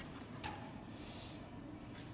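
A single light metallic clink with a brief ring about half a second in, as the wire queen excluder is handled, then quiet room tone.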